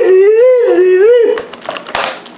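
A person's voice holding a high, sing-song "ooo" that rises and falls in a repeating wave, like a mock-spooky howl, stopping about a second in. Clear plastic packaging then crinkles briefly near the end.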